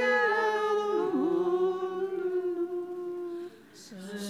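Slow unaccompanied hymn singing in long held notes, with a short pause between phrases near the end.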